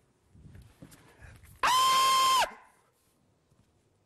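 A single electronic beep: one steady, unchanging tone held for just under a second, starting a little over a second and a half in.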